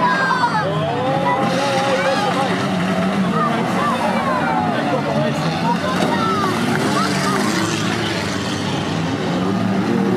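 Several banger-racing cars' engines revving as the cars shove against each other in a pile-up, over a steady din of crowd voices.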